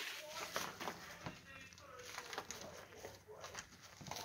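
Faint crinkling of plastic cling wrap as a wrapped ball is pulled and unwound by hand, in short scattered crackles, with low voices behind it.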